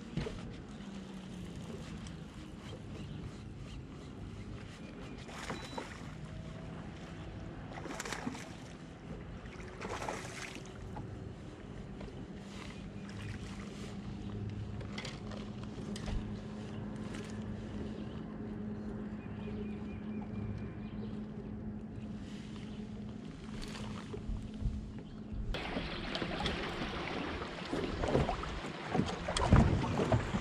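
A low, steady hum from an electric trolling motor, with scattered clicks and knocks from rod, reel and handling. About 25 seconds in it gives way abruptly to wind buffeting the microphone over choppy water, with low thumps near the end.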